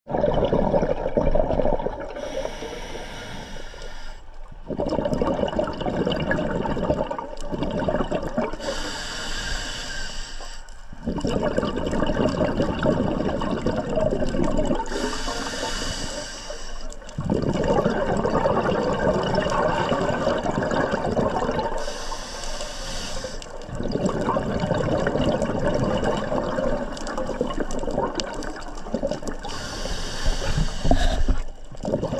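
Scuba diver breathing through a regulator: a hissing inhale about every six or seven seconds, each followed by a long stream of exhaled bubbles gurgling past the camera. Four full breaths, with a fifth inhale starting near the end.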